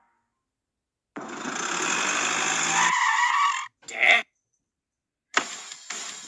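A loud, noisy sound effect that builds for about two and a half seconds and cuts off suddenly, followed by a short sharp blast. Music with a regular beat starts near the end.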